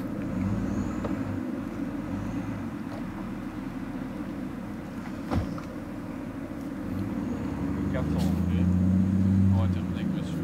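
Low, muffled rumble of a motor vehicle, heard through a covered camera microphone. It swells near the end, and there is one sharp click about five seconds in.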